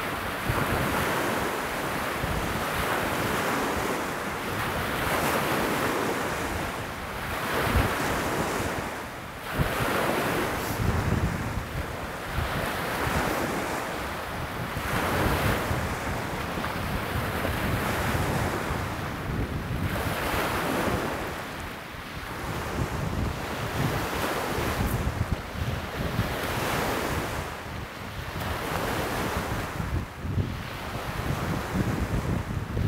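Choppy lake waves breaking and washing over a pebble shore, surging every few seconds, with wind gusting on the microphone.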